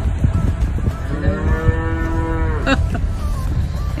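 A calf mooing once, one long call lasting about a second and a half, over the low rumble of a slowly moving car.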